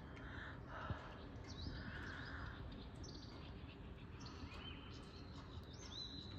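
Faint birdsong: small birds chirping in short high calls now and then, over a low steady background rumble.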